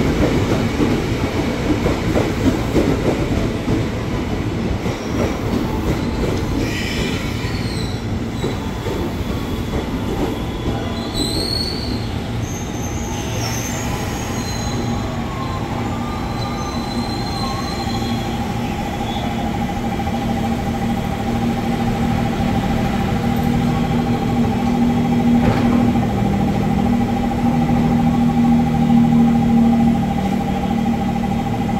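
KRL Commuter Line electric train rolling in along the platform and braking to a stop, with a few short high squeals while it slows. It then stands with a steady whine and a low hum.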